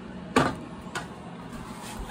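Aluminium pressure canner lid being twisted loose by hand after processing: a short knock about half a second in, then a couple of faint clicks.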